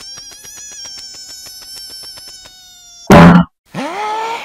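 A high, buzzing pitched tone chopped into rapid, even pulses, held for about two and a half seconds and then fading. A sudden very loud, short burst follows about three seconds in, and a rising pitched glide near the end.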